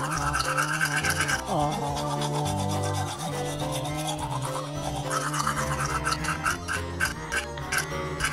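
Toothbrush scrubbing back and forth on teeth in quick repeated strokes, heaviest near the start and again in the last few seconds, over background music.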